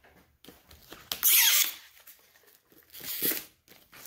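Clear plastic wrap being torn and pulled off a cardboard product box: a loud rip about a second in, a shorter one near the three-second mark, and small crinkles between them.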